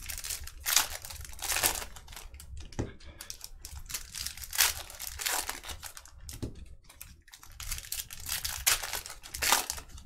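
Foil trading-card pack wrappers crinkling and tearing as packs are ripped open and handled by hand, in a string of irregular rustles.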